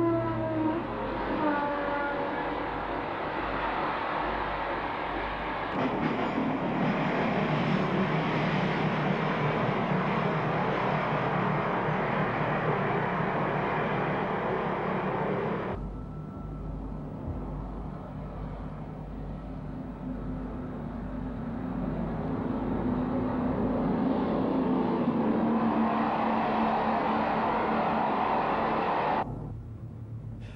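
Diesel trains passing at speed: a loud, steady rush of engine and wheel noise. It comes in spliced sections that change abruptly about 6 and 16 seconds in. After the second change it drops quieter, then builds up again as another train approaches.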